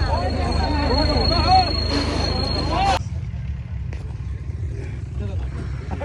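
Tractor engine running steadily with people talking over it; about three seconds in the sound cuts abruptly to the engine running alone, with one short click a second later.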